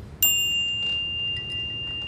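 A single high bell-like chime, struck once about a quarter second in, then ringing on with one clear high tone that slowly fades.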